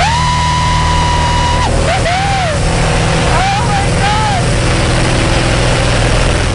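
Steady drone of a small single-engine propeller plane heard inside its cockpit, with wind noise, during aerobatic rolls. Over it, a high-pitched vocal squeal is held for about a second and a half, followed by two or three shorter rising-and-falling squeals.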